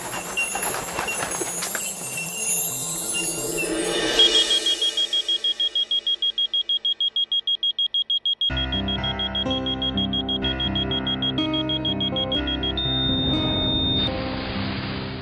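Television soundtrack: a shimmering sound swell, then a rapid high electronic beeping of about eight beeps a second. Background music with a bass line joins about halfway through, and near the end the beeping becomes one steady high tone.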